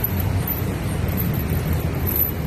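Steady low rumble of street traffic, with no distinct events standing out.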